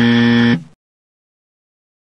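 A game-show style "wrong answer" buzzer sound effect: one flat, steady buzz that cuts off about half a second in.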